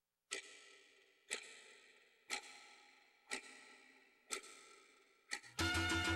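A ticking-clock sound effect: six sharp, ringing ticks, one a second, each fading away before the next. Music comes back in near the end.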